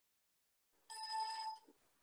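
A brief ringing chime with several steady pitches, starting about a second in and lasting under a second.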